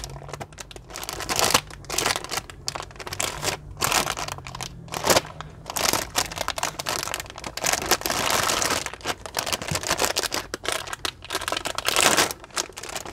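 Metallized anti-static bag crinkling and rustling as it is worked back and pulled off a graphics card, in irregular bursts with a denser stretch of rustling in the middle.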